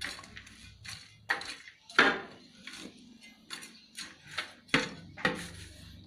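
A small hand scoop stirring a potting mix of cocopeat, dry grass and manure in a plastic tub. The scoop makes irregular scraping and knocking strokes against the tub, about two a second.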